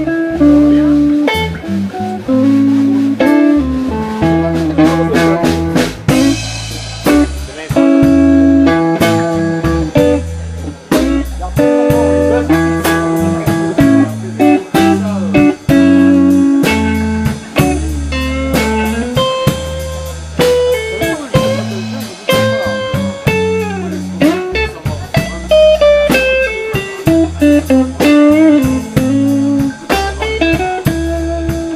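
Live electric blues trio playing an instrumental passage: electric guitar lines over electric bass and a drum kit keeping a steady beat.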